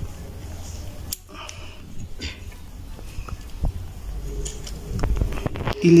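Light clicks and taps of small metal parts being handled in a car radiator fan motor as the carbon-brush spring wires are set back into position, a few separate clicks over a low background rumble.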